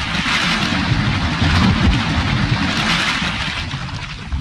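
Title-animation sound effect: a rumbling, crackling fire burst that swells to a peak about two seconds in, then fades.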